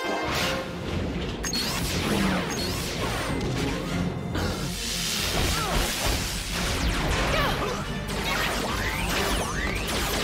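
Cartoon action sound effects: crashes, whooshes and sliding sci-fi zaps from laser turrets and energy nets, over a busy music score.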